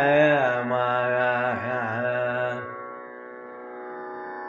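A man's voice sings a line of a Carnatic varnam in raga Sudhadhanyasi, bending and shaking the notes in gamakas, over a steady sruti drone. The voice stops about two and a half seconds in, and the drone goes on alone.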